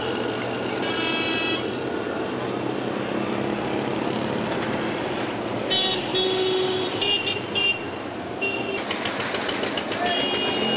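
Busy street traffic with small engines and road noise, and short high vehicle horn toots a few times. A rapid rattle comes near the end.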